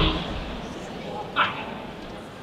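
Border collie giving two short, sharp barks about a second and a half apart, the second the louder.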